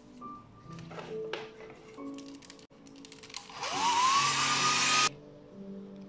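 Hair dryer switched on past the middle to dry acrylic paint on wood, its whine rising as the motor comes up to speed. It blows for about a second and a half, then cuts off suddenly.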